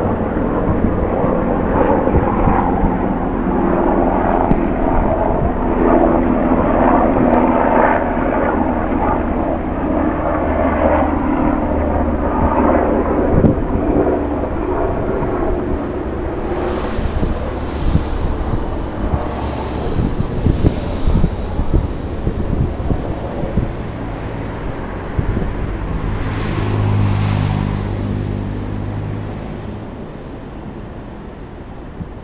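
A steady, loud engine rumble, strongest in the first half and slowly fading toward the end, with a few short hisses in the second half.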